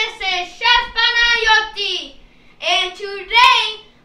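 A child's high voice singing in drawn-out, gliding phrases, with a short break about halfway through.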